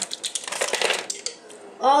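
A ring of plastic measuring spoons clattering as it is set down on a kitchen counter, a quick run of light clicks over about a second, with a spoon tapping the mixing bowl.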